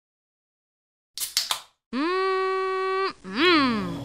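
Edited intro sound: three quick clicks, then a held, voice-like tone for about a second that drops away, followed by a short tone that swoops up and back down.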